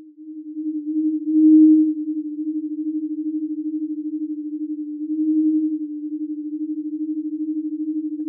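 Sonified starquake oscillations of a small, helium-rich star that has lost its outer envelope, played back as sound: one steady tone with a fast, even flutter, swelling louder about one and a half seconds in and again around five seconds. Because the star is small, its sound waves are higher in frequency than those of larger stars.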